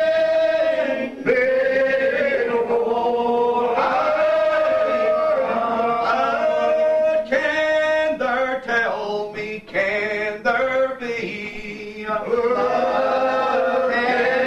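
A Primitive Baptist congregation of men's voices singing a lined hymn unaccompanied, drawing each syllable out in long, slow held notes. A little past the middle the held notes break into a shorter, choppier passage before the long notes resume near the end.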